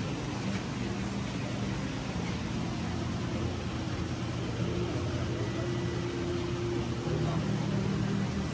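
Steady low hum with an even hiss of moving water from the pumps and filtration of reef aquarium tanks.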